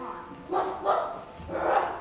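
A person imitating a dog, giving three barks, the last the loudest.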